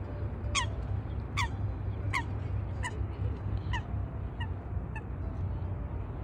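A goose honking seven times in a steady series, about one call every three-quarters of a second, the calls growing fainter in the second half. A steady low rumble runs underneath.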